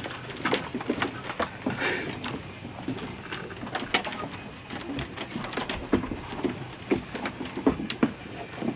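Room noise in a small live-music venue between songs: scattered clicks and knocks and low, indistinct sounds from the stage and audience, with no music playing.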